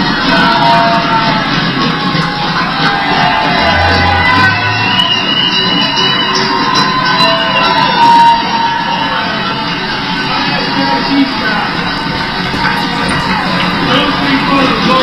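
Race finish-line recording played back through a hall's speakers: loud music over a cheering, shouting crowd as the runner comes in to the finish.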